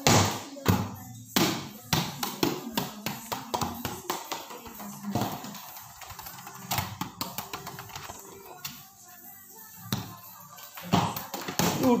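An irregular run of sharp taps and knocks, several a second, over faint steady tones. Near the end a loud pitched sound slides down in pitch.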